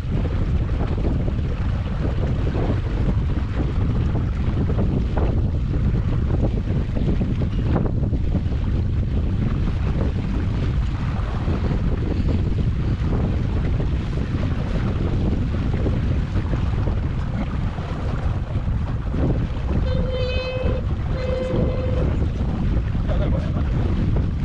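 Steady wind rumbling on the microphone, with water washing past as a Scruffie 16 wooden sailing dinghy moves under sail. Near the end there are two short pitched tones about a second apart.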